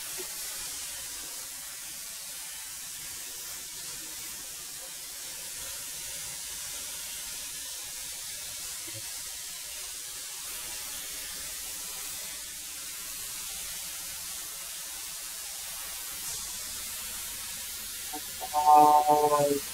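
13-inch benchtop thickness planer running steadily as boards are fed through it, a continuous hiss with a faint motor whine.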